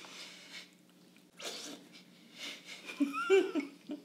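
Coffee slurped hard off a cupping spoon, a couple of short, noisy, airy slurps, the first the loudest.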